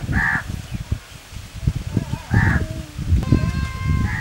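A crow cawing twice, about two seconds apart, with a steady held call near the end, over irregular low rumbling and knocks.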